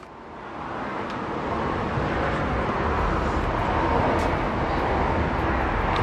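Steady outdoor road-traffic noise: a rushing sound with a low rumble that builds over the first couple of seconds, then holds.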